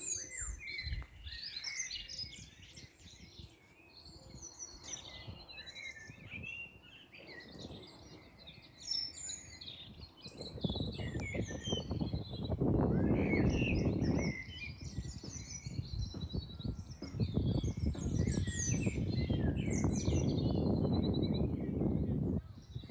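Several small birds chirping and trilling in the trees throughout. From about halfway through, a loud low rumbling noise rises over the birdsong and becomes the loudest sound.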